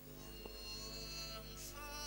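Cải lương music: sustained instrumental notes over a steady low hum, with a man's singing voice with wide vibrato coming in near the end.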